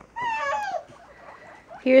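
A guinea pig's single short, high call that drops in pitch at its end.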